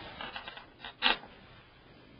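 Scraping and rubbing on a steel PC case as the CD-ROM drive's mounting screws are driven in, with one short, sharp knock about a second in.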